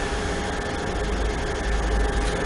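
Steady room noise: an even hiss over a low hum, typical of a lecture room's ventilation picked up through the microphone, with no other sound standing out.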